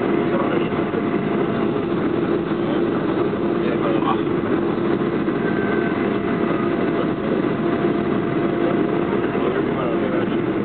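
Steady cabin noise of a Boeing 737-500 taxiing after landing, its CFM56-3 turbofans at idle: an even hum with a faint steady whine. Faint voices of passengers are mixed in.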